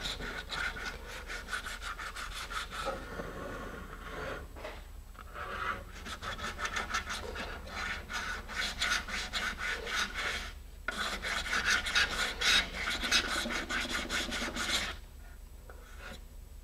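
Sandpaper glued to a half-inch wooden dowel, rubbed back and forth along a cured epoxy fin fillet on a fiberglass rocket tube in quick, even strokes, several a second. The strokes pause briefly a few times and stop about a second before the end.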